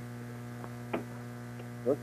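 Steady electrical mains hum in the radio broadcast audio, with one faint short tick about a second in.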